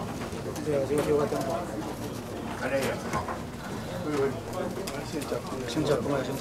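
Indistinct chatter of several people talking at once, none clearly, with scattered light clicks and knocks from people moving about.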